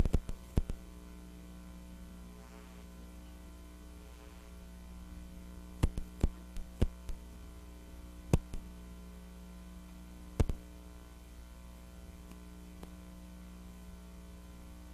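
Steady electrical mains hum from the audio system with the microphone muted, broken by sharp clicks and knocks: a few just after the start, a quick run of them around six to seven seconds in, and single ones at about eight and ten seconds.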